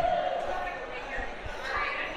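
Background chatter and calls of a crowd of children echoing in a large hall, several voices overlapping, with a few dull low thumps.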